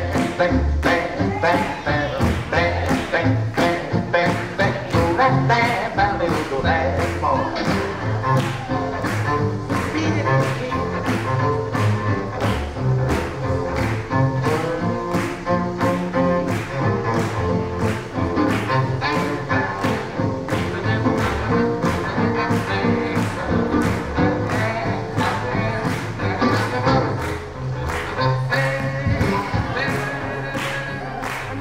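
Swing jazz band music with a steady beat of about two strokes a second.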